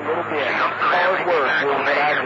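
Speech received over a CB radio by skip: a voice with a thin, narrow radio sound and a steady low hum underneath.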